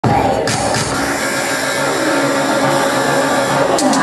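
A pop dance track playing loud and steady over a hall's sound system, with audience noise beneath and a few sharp clicks.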